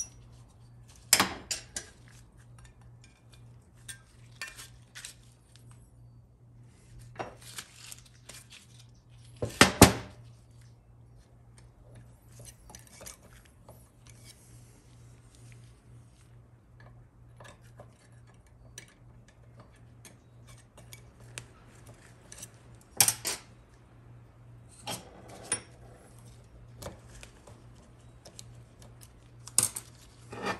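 Scattered clinks and knocks of metal parts as an aluminium transmission valve body is handled on a steel workbench and its valves and springs are pried out and set down. The loudest knocks come about a third of the way in and again past the three-quarter mark, over a steady low hum.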